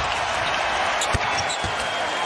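Steady arena crowd noise, with a basketball bouncing on the hardwood court twice, about a second in and again half a second later.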